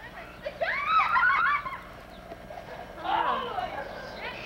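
High-pitched voices calling out, without clear words: a burst lasting about a second, starting about half a second in, and a shorter one about three seconds in.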